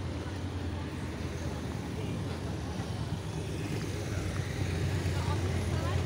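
Street traffic ambience: a steady low engine rumble from vehicles on the road, with an even background hiss and faint distant voices near the end.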